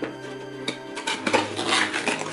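Hands turning and handling a cardboard toy box, with short knocks and scrapes of the cardboard from about a second in, over background music.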